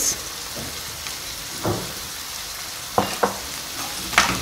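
Diced chicken, peas and green pepper sizzling steadily as they fry in oil in a pan, just seasoned with spices and salt. A wooden spoon stirs and scrapes the pan a few times, twice in quick succession about three seconds in.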